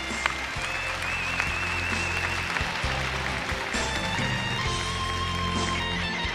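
Studio audience applauding over the show's background music, a sustained melody with low bass notes.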